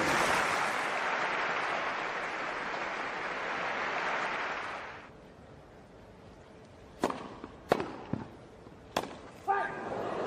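Crowd applauding steadily, dying away about five seconds in. Then a tennis ball struck by racquets, a serve and a short rally: three sharp hits, the second the loudest.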